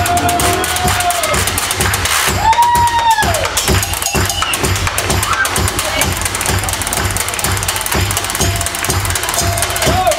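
Live blues playing: a washboard scraped and tapped in a fast, even rhythm over guitar and a steady low beat, with a few long sliding notes.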